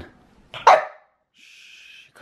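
An Australian shepherd gives a single short, loud bark about two-thirds of a second in.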